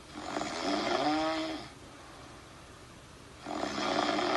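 A person snoring twice: two drawn-out snores about three seconds apart, the first rising and falling in pitch.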